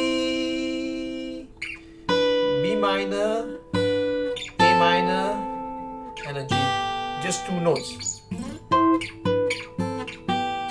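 Olson SJ steel-string acoustic guitar, cedar top with Indian rosewood back and sides, fingerpicked: chords struck one after another every second or two and left to ring and fade, then a few quicker notes near the end.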